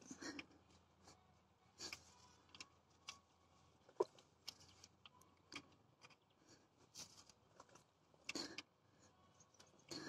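Near silence with scattered faint clicks and light rustles from handling work, and one sharper tick about four seconds in.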